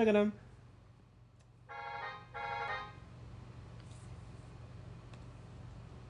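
Two short synthesized notes, each about half a second long, played back by Finale notation software over the computer's speakers, followed by a few faint mouse clicks over a low steady hum.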